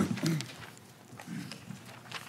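A voice trailing off in the first moment, then quiet room tone with a faint low murmur of voices and a few small clicks.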